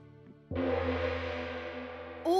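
A gong struck once about half a second in, ringing on with a deep hum and slowly fading, as a scene-change sound effect over soft background music.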